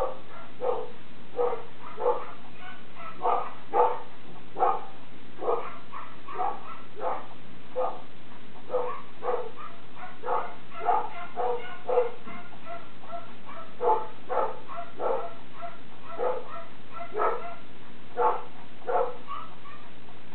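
An animal's short calls, repeated at an irregular pace of about one or two a second, over a steady low hum.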